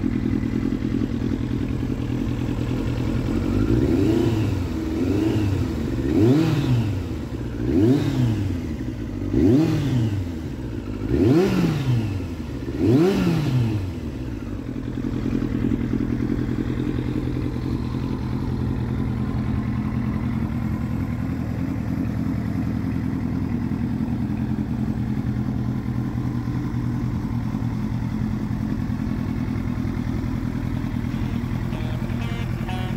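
1997 Kawasaki ZX-7R's 748cc inline-four idling, blipped about seven times in quick succession a few seconds in, each rev rising and falling, then settling back to a steady idle.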